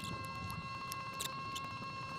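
Sped-up handling noise from hands working on a preamp circuit board and its wiring: scattered small clicks and scratches over a steady high-pitched tone.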